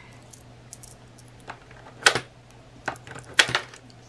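Coins clinking: pennies handled in the fingers and fed into the slot of a digital coin-counting jar, a few sharp clinks with the loudest about two seconds in and again about three and a half seconds in.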